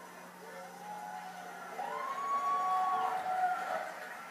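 Audience voices calling out long, drawn-out cheers and whoops: a few overlapping rising-and-held calls that swell about two seconds in and die away near the end.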